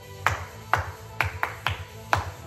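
Background workout music with a steady bass beat, over which hands clap five times at uneven spacing.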